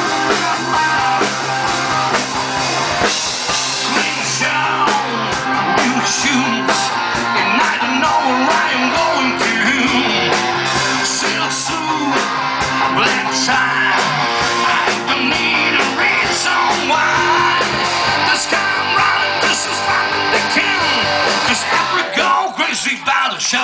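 A live rock band playing: drum kit, electric guitar and a man singing into a microphone.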